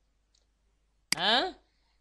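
Quiet for about a second, then a single sharp click, followed at once by a short spoken syllable that falls in pitch.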